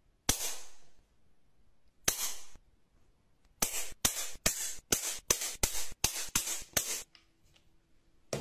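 Small strong magets—neodymium block magnets—snapping together on a metal plate. A sharp click with a short metallic ring comes first, a second about two seconds later, then a quick run of about a dozen clicks as the magnets snap into a row one after another.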